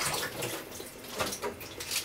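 Tomato soup simmering in a pot of cabbage rolls and vegetables, bubbling in irregular pops.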